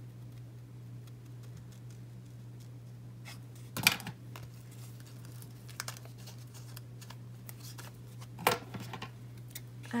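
Small scissors snipping through a paper sticker sheet: a few short cuts, with two louder snips about four seconds in and near the end, over a steady low hum.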